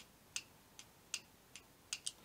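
The mechanism of an opened 30 A DC thermal circuit breaker clicking as it is held by hand with its trip foot pushed out. The small, faint clicks come about every 0.4 s, alternately louder and softer, an unexpected behaviour after reassembly that the owner finds slightly strange.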